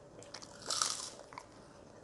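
A person chewing sweet beef jerky close to a clip-on mic: small wet mouth clicks, with one short, louder noisy burst about three quarters of a second in.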